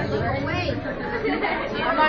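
Crowd chatter: many voices talking at once in a large hall.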